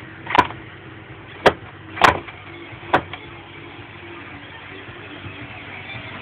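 Four sharp wooden knocks in about two and a half seconds as blocks on a wooden board are pushed and shifted by hand, over a low steady background hum.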